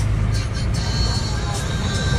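Steady low rumble of a vehicle's engine and tyres, heard from inside the moving vehicle, with music also playing.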